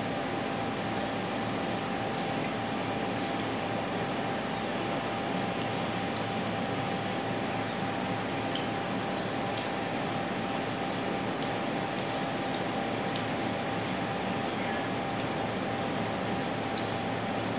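Steady indoor machine hum with a constant high tone running through it, and a few faint, scattered clicks.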